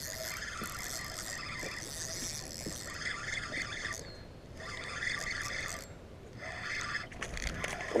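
Mayhem MY20 spinning reel being cranked in four or five short spells with brief pauses, its gears whirring as a hooked bass is reeled in.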